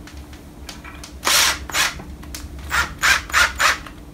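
Parkside cordless drill run in short trigger bursts, twisting copper wires hooked between a bench vise and the drill: one longer burst, then about five quick ones.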